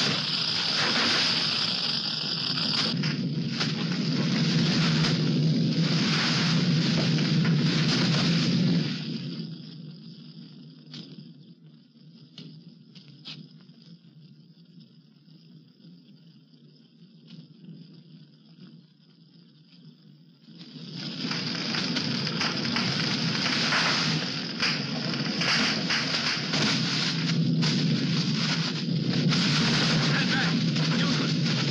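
A wooden stable and its hay burning, with loud, dense crackling. About nine seconds in it drops away to faint, scattered crackles, then comes back loud about twenty-one seconds in.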